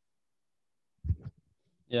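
Dead silence, as from a noise-gated online call, then a short low thump about a second in, and a man starting to say 'ya' near the end.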